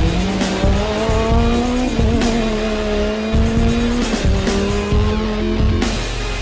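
Renault Twingo rally car's engine at high revs, its pitch climbing and then dropping sharply about two seconds in and again about four seconds in, heard over background music.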